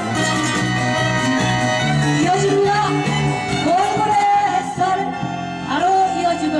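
Live band playing an instrumental passage of a Korean trot song: a gliding lead melody over keyboard chords and bass.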